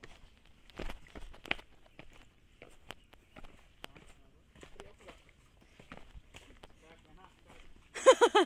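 Footsteps of people running down a dirt forest trail: irregular quick steps on earth, roots and dry leaf litter, the loudest about a second in, with faint voices in the background.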